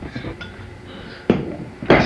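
A single sharp knock about a second and a half in, against a low background hum; a voice starts up right at the end.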